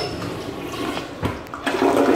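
American Standard Champion Pro toilet being flushed. The lever clicks at the start, then water rushes into the bowl, growing louder toward the end.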